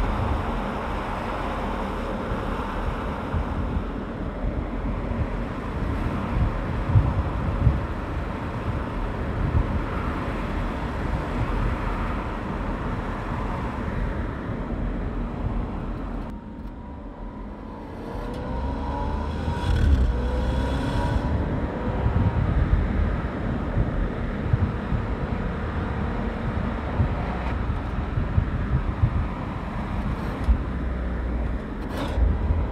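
Audi A8 saloon driving on the road: a steady rumble of engine and tyre noise. About sixteen seconds in the sound drops away briefly, then returns with rising engine tones.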